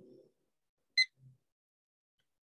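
A single short, high electronic beep about a second in; otherwise near silence.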